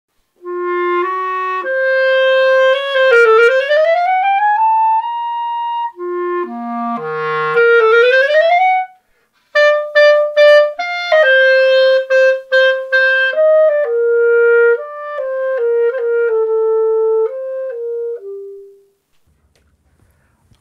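Unaccompanied Backun MoBa B♭ clarinet in grenadilla wood with silver keys playing a solo passage in three phrases, with quick runs of notes and sliding upward glides in pitch, dipping to low notes in the middle phrase. It stops about a second before the end.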